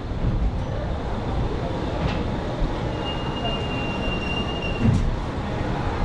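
MEMU electric train coach rolling slowly, heard from its open doorway: a steady low rumble with a couple of brief knocks, and a thin high tone held for about two seconds past the middle.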